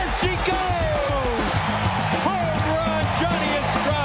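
Ballpark crowd cheering and shouting as a home run goes out, many voices rising and falling over one another.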